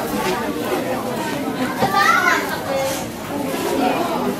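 Indistinct chatter of several overlapping voices, with one higher voice rising out of the babble about two seconds in.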